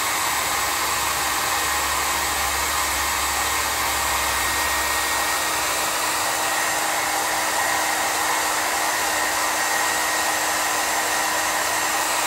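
A small handheld blow dryer runs steadily, blowing air onto freshly pasted paper to dry it. Its even rush of air carries a faint steady whine, and a low rumble underneath drops away about halfway through.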